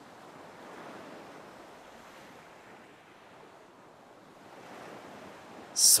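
Ocean surf washing on a shore: a soft, steady wash of waves that swells about a second in and again near the end.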